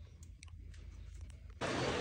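A few faint clicks from a JLT cold-air intake tube being pushed by hand onto the throttle body coupler, over a low steady hum. Near the end a louder steady rush of noise starts abruptly.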